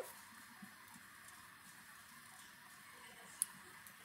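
Quiet room tone with a single short, sharp click about three and a half seconds in, fitting a press of a key on the press control's keypad as the menu selection is entered.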